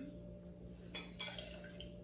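Irish whiskey poured from a glass bottle into a small metal jigger: a faint liquid trickle, with a small click about a second in.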